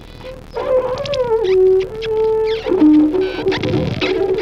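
Improvised experimental music for saxophone and effects-processed electric guitar. After a quiet first half-second, sliding pitched tones bend downward and hold, then give way to lower sustained tones from a little before three seconds in.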